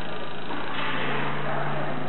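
Electric gasoline fuel pump running steadily on a test bench with a steady low hum, its supply voltage turned down.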